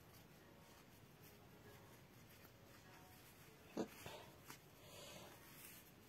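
Near silence: room tone, broken by one short soft sound about four seconds in.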